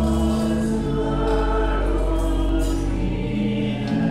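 A choir singing a hymn with organ, in long held chords that change a few times.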